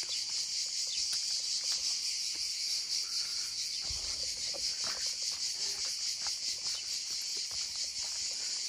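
A steady, high-pitched chorus of insects buzzing, with a faint fast pulsing, and a brief soft low thump about four seconds in.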